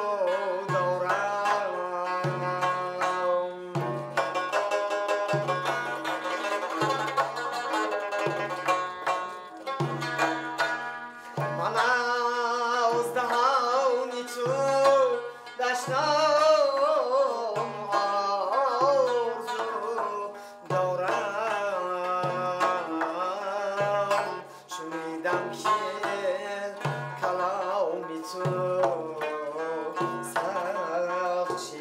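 Tajik song performed live: a young man's voice singing a winding melody while he plucks a long-necked lute, over a doira frame drum playing a steady rhythm of deep low strokes and sharp high slaps.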